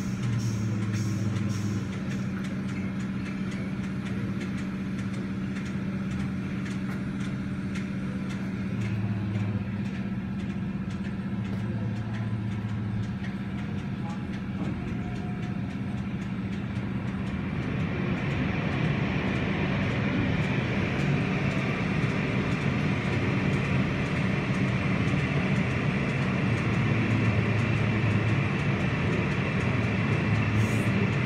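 Automatic car-wash tunnel equipment running: a steady low motor hum under the spray and the rotating cloth brushes. From a little past halfway the hiss of water and brushes grows louder as they work on a vehicle.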